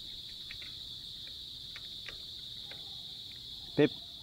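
Steady high-pitched insect chorus, like crickets, with a few faint light clicks from a multi-tool turning the brake caliper bolts.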